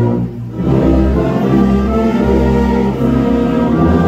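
Orchestra of bowed strings and brass playing a hymn in slow, held chords, with a short break between phrases just after the start.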